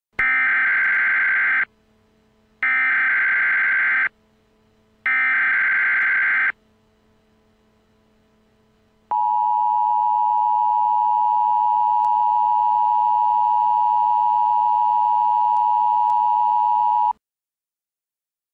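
Emergency Alert System broadcast tones: three loud bursts of SAME digital header data, each about a second and a half long with a short gap between, then after a pause the steady two-tone EAS attention signal for about eight seconds, cutting off suddenly.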